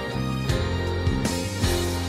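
Music: a pop-ballad backing track with guitar and bass, with a saxophone playing along.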